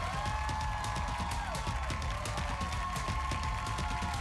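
Break music playing the show out to commercials: a steady bass line under a regular drum beat, with held melody notes above.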